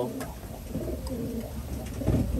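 Domestic racing pigeons in the loft cooing, with a series of low, repeated coos.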